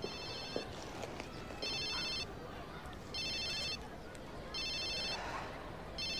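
Mobile phone ringing: a high electronic trilling ringtone in short bursts of about half a second, repeating about every second and a half.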